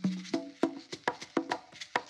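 Background music: short struck, pitched notes over a light wood-block-like click, about four beats a second.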